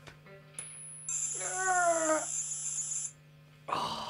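A phone speaker held to an electric guitar's pickup plays a TonePrint data transfer: a short high beep, then about two seconds of shrill, warbling high-pitched data tones that cut off suddenly, beaming a preset into a TC Electronic pedal. A falling, voice-like tone sounds during the middle of it.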